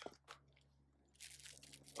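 Near silence with faint handling noises: nitrile-gloved hands laying rubber O-rings into a plastic drain pan, with a soft click just after the start and a faint rustle a little over a second in.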